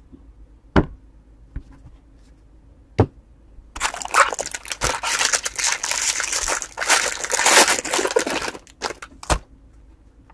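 Foil wrapper of a trading-card pack being torn open and crumpled: a dense crinkling, tearing rustle lasting about five seconds from a little under four seconds in. A few sharp taps come before it and one more near the end.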